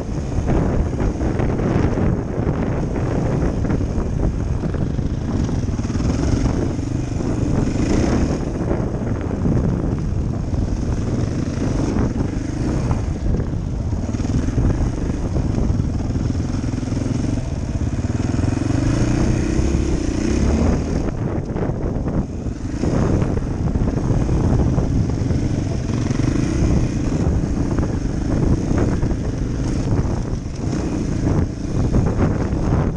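Dirt bike engine running under constantly changing throttle on a trail ride, its pitch rising and falling again and again. It is heard from the rider's helmet.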